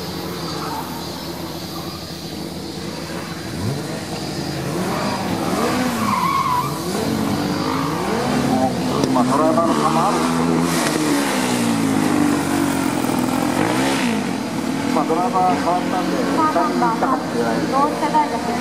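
Student formula race car engine revving, its pitch climbing and dropping again and again. A man's voice speaks near the end.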